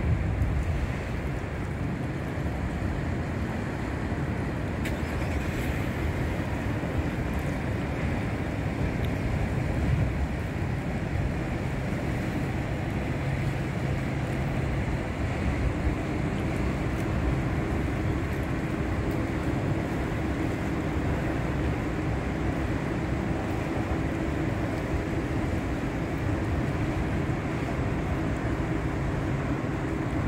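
Steady low rumble and drone of the lake freighter Arthur M. Anderson passing on the river, with a humming tone that grows stronger about halfway through as the ship comes abeam.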